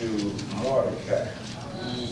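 Speech: a man talking slowly into a microphone, his voice coming in drawn-out phrases.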